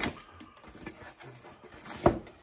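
Quiet rustling, scraping and small clicks of a delivery package being opened by hand, ending in a sharper, louder rip or scrape.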